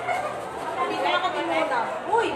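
Several people chattering at once, their voices overlapping and the words indistinct.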